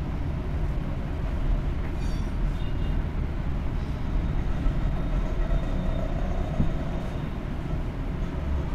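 Samosas frying in hot oil in a kadai on a gas stove: a soft, steady sizzle over a constant low rumble.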